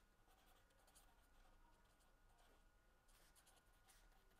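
Near silence, with the faint scratching of a pen writing on paper in short strokes.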